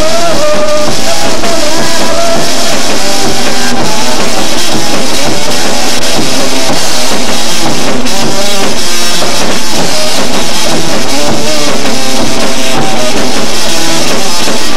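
A rock band playing live: drum kit with cymbals and an electric guitar, recorded very loud, near the recording's limit the whole time.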